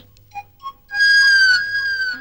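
Background score of a film comedy. A couple of short soft notes sound, then about a second in a high whistle-like note is held for about a second and sags slightly in pitch near the end.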